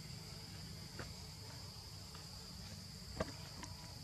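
Steady high-pitched drone of insects, over a low rumble, with a couple of sharp clicks, the loudest about three seconds in.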